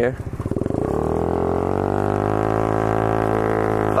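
Honda Ruckus scooter's small single-cylinder four-stroke engine, fitted with a Yoshimura exhaust, pulsing as it pulls away, then winding up over about a second into a steady drone under throttle.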